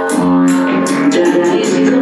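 Dub music played loud through a sound system: held bass and melody tones over a steady percussion beat.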